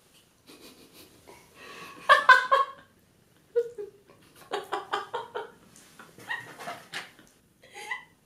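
Women giggling in short bursts, three or four bouts with pauses between.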